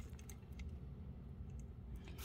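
Faint, irregular small clicks of a beading needle and Miyuki 11/0 glass seed beads being handled between the fingertips as the needle is passed through the beadwork.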